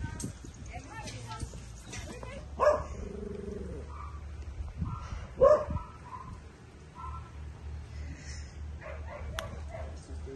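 A dog barking twice, short single barks about two and a half and five and a half seconds in, with softer voice-like sounds in between.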